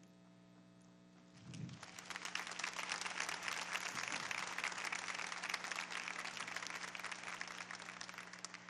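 Audience applauding, starting about a second and a half in, building quickly to a steady level and easing off near the end, over a steady electrical hum in the sound system.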